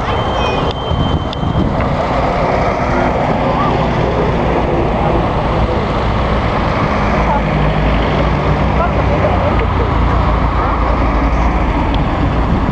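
Vintage cars driving past one after another, engines and tyres running steadily, with wind rumble on the microphone. One car's low engine hum stands out as it passes in the middle of the stretch.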